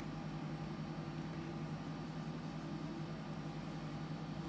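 A steady low hum over a faint hiss, without change in pitch or level.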